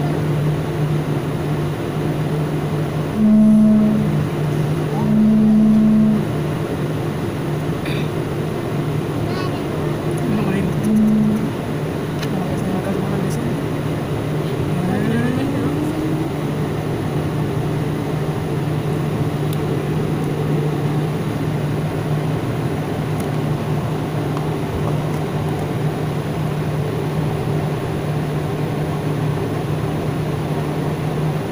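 Jet airliner's engines idling, heard inside the cabin as a steady hum with a constant low drone while the aircraft holds on the runway before take-off. A few short, louder low tones sound in the first dozen seconds, and a brief rising tone comes about fifteen seconds in.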